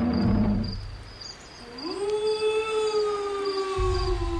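A long animal howl, like a wolf's, rising about two seconds in and then slowly falling in pitch, over a steady pulsing chirp of crickets. A low rumble fills the first second.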